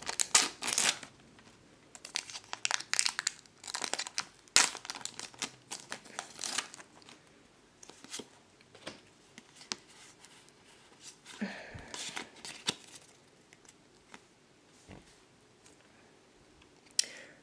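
Foil wrapper of a Pokémon trading card booster pack being torn open and crinkled, in loud, sharp crackles through the first six or seven seconds. After that come softer rustles and clicks as the stack of cards is handled.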